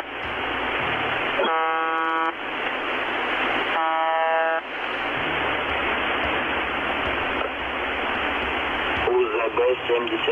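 Shortwave broadcast of the Russian 'Buzzer' station UVB-76 over radio static: a short, monotonous buzz tone repeats about every two and a half seconds, the station's 25 buzzes a minute, sounding twice in the first half. Then static alone, and near the end a voice speaks through the static.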